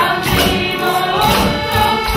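A group of voices singing a song together, accompanied by an accordion and other instruments.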